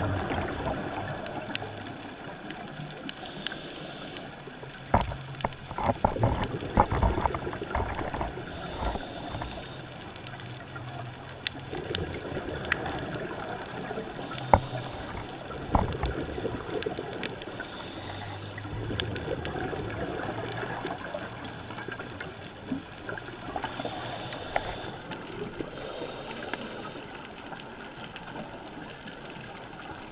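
Scuba diver breathing through a regulator, heard underwater: about six hissing inhales, each followed by the gurgling bubbles of the exhaled breath, with scattered small clicks.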